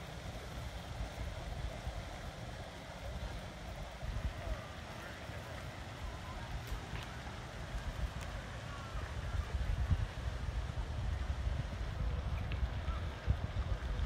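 Wind buffeting the microphone: a low, irregular rumble with no speech over it.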